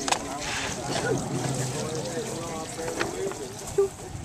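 Background voices of several people talking, with no clear words, and a sharp click at the start and another about three seconds in.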